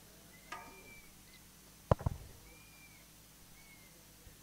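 Two quick low thumps close together about halfway through, the loudest sound here, over faint short high chirps that recur every second or so.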